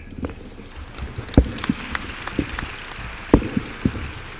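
Audience applauding, a light steady patter of clapping, with two dull thumps about a second and a half in and again near the end.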